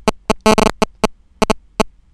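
A quick, irregular series of sharp clicks, about four a second, over a steady low mains hum.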